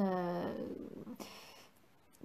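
A woman's voice trailing off in a drawn-out, falling hesitation sound that fades into breath noise, then a moment of silence near the end.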